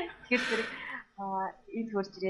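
Conversational speech, with a brief harsh throat clearing about half a second in, followed by a few short spoken sounds.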